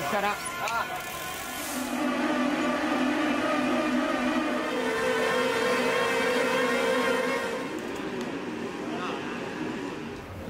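Mountain bike tyres spinning on warm-up rollers: a steady whirring hum that sets in about two seconds in and fades after about seven and a half. Voices are heard briefly at the start.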